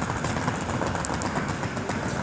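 Steady low background rumble with no clear rhythm or pitch.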